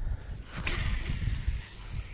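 Low wind rumble on the microphone, with a baitcasting reel whirring for about a second in the middle.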